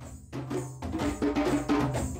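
A group of djembes and dunun drums playing an ensemble rhythm together, with ringing low drum tones under sharp hand strokes, getting louder in the first second.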